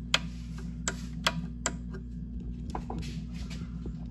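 New rocker-style (Decora) wall light switch being flipped on and off repeatedly to test it, a run of sharp clicks, the loudest in the first two seconds and fainter ones later.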